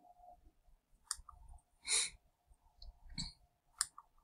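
Faint, sparse computer mouse clicks, two sharp ones about a second apart from the middle, as slideshow images are clicked through, with a short soft hiss about halfway and a faint steady hum underneath.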